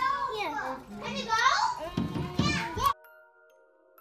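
Young children talking and calling out excitedly, cut off abruptly about three seconds in. Faint background music of held notes follows.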